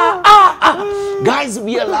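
Men laughing loudly with high-pitched, drawn-out wailing whoops, then a man starts talking again near the end.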